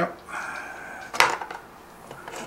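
One sharp clack of dice on the gaming table about a second in, after a short spoken "yep".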